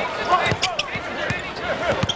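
Basketball dribbled on a hardwood court, several sharp bounces, over the hubbub of an arena crowd and voices.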